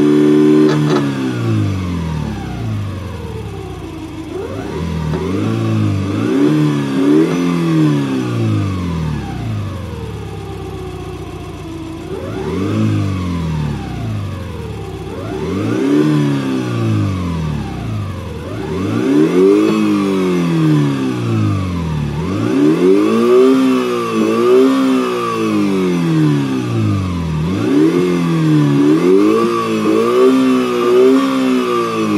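Homemade optical multi-disc engine-sound generator imitating a Subaru EJ20 flat-four with equal-length exhaust, being blipped: the engine note rises and falls in pitch in a string of rev blips, several in quick pairs. A steady high whine runs under the later blips.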